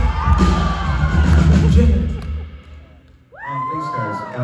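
Live band music in a large hall, breaking off about two seconds in; after a brief lull the audience cheers and whoops.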